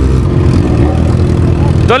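Motorcycle engines idling at a standstill, the nearest being the camera bike, a Yamaha XJ6 with an inline-four. They give a steady, loud engine note with no revving.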